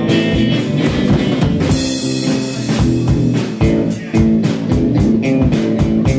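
Live rock band playing an instrumental passage: electric guitar over a drum kit played in a steady beat, with no vocals.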